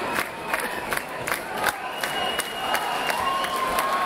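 Concert audience cheering and clapping in a large hall, with no music playing. Two long, steady, high-pitched notes rise above the noise, one about halfway through and one near the end.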